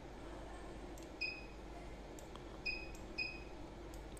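A few faint, short clicks, each with a brief high ring, over steady low room noise: clicks from operating a laptop to rearrange windows in control software.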